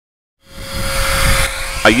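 Power sander with a shop vac hooked to it, running steadily with a whine; it cuts in abruptly about half a second in. It is sanding old antifouling paint residue off a boat's gel coat with 100-grit sandpaper.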